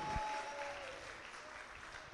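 Church congregation applauding, the applause thinning out and fading, with a faint held tone in the first second.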